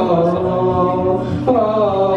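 A song with a drawn-out, held vocal line; the voice shifts to a new note about one and a half seconds in.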